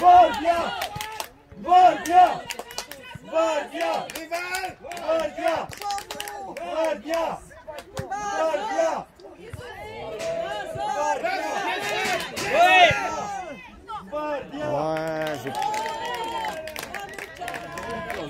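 Several people shouting and calling out across a football pitch, the voices overlapping in short loud bursts, with scattered short clicks between them.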